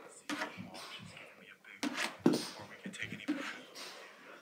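Knocks and rustles of a handheld phone being carried quickly through a carpeted room, with footsteps and breathing close to the microphone; the loudest bumps come about two seconds in.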